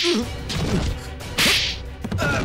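Two sharp swoosh-and-hit fight sound effects about a second and a half apart, as a man is thrown down in a TV fight scene, with short falling grunts between them.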